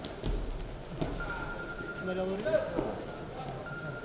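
A wrestler's body lands with a heavy thump on the wrestling mat about a quarter second in, as he is taken down from a lift. Men's voices call out over the arena's background noise.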